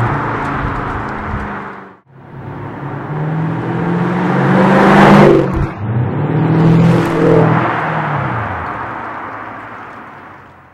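Mercedes-Benz CL500 V8 with an aftermarket MEC Design 'Earthquake' sport exhaust doing drive-bys. The first pass fades until a cut about 2 s in. The second builds to a loud pass about halfway, dips briefly, swells once more and fades as the car pulls away.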